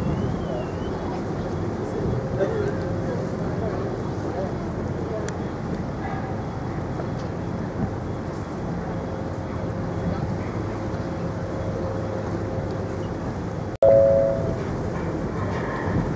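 Ferry engines humming steadily, with wind on the microphone on the open deck. Near the end, after a sudden break, a short two-note chime of the ship's public-address system sounds ahead of an announcement.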